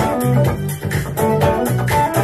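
Godin TC electric guitar played through an MXR Fat Sugar overdrive pedal, picking out the song's part along with a full band recording that has a steady drum beat and a pulsing bass line.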